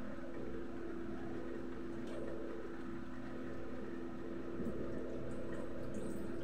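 A steady electric motor hum, two even low tones over an airy hiss, unchanged throughout, most likely the kitchen range-hood fan running over the gas stove.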